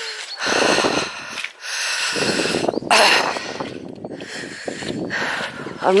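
A woman's heavy, laboured breathing while walking, several breaths about a second long each with short pauses between. Her breathing is strained after a bout of chest trouble she likened to an asthma attack.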